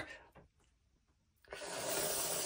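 A brief silence, then about a second and a half in a steady hiss begins and runs for about a second.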